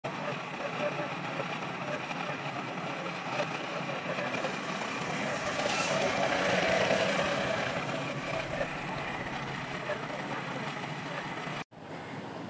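Electric-motor flexible-hose screw conveyor (grain suction machine) running under load, its spiral auger carrying grain up the hose and pouring it out: a steady, dense rushing noise that swells in the middle and cuts off suddenly near the end.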